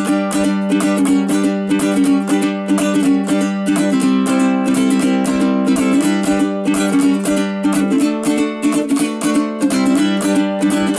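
Ukulele strummed in a steady rhythm, chords ringing, with a chord change about eight seconds in.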